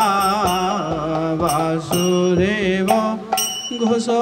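A man singing a drawn-out devotional kirtan melody, his voice sliding and bending between notes, to his own mridanga (khol) drum. The drum sounds with a stroke about every half-second to second.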